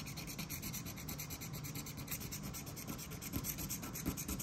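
A Texas Lottery Loteria scratch-off ticket being scratched, the coating rubbed off in rapid, even back-and-forth strokes.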